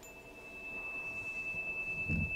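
A single steady high-pitched tone over a faint low hum and hiss that grows slowly louder.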